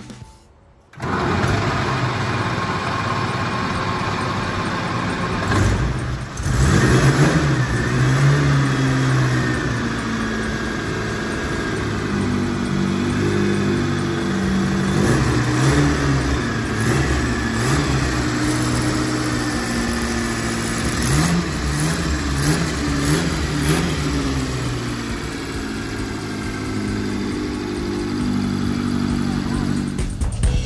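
Bugatti Type 35 straight-eight engine starting abruptly about a second in, then running, with a dip around six seconds and repeated short throttle blips around seven seconds and again past twenty seconds.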